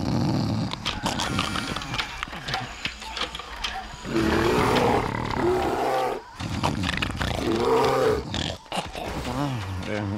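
Cartoon cave bear roaring and growling, with two long wavering roars about four and seven seconds in, after a loud low rumble at the start.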